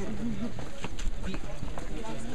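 A man's voice over the footsteps and shuffling of a tour group walking on a stone path, with background chatter.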